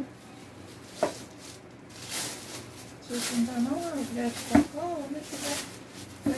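Plastic wrapping rustling as a round MDF wall niche is pulled out of it by hand, in two swishes, with a sharp click about a second in and a knock near the middle. A voice speaks briefly in between.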